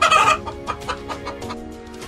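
A hen clucking once, short and loud, right at the start, over steady background music.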